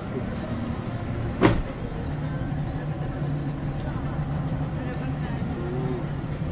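A boat engine running steadily with a low, even hum, and one sharp knock about a second and a half in.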